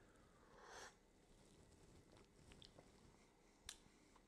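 Near silence with faint mouth sounds of someone tasting hot coffee: a soft sipping intake of air about half a second in, small lip ticks, and one sharp click near the end.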